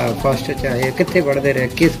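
Speech only: a boy's voice answering interview questions.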